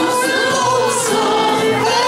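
A woman singing a Turkish song into a microphone over a choir, accompanied by clarinet, violin and kanun, with long held notes that bend in pitch.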